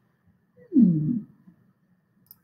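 A woman's short wordless vocal sound, sliding down in pitch from high to low, about a second in.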